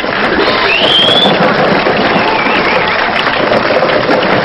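Studio audience laughing and clamouring while small hard lottery balls clatter out of a jammed wire draw drum onto the floor, with a short high rising squeal about a second in.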